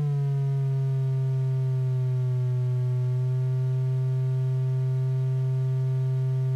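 Triangle-wave output of a DIY-built Befaco Even analog VCO sounding a steady tone. Its pitch glides slightly down in the first second as the fine-tune control is turned, then holds steady on a C.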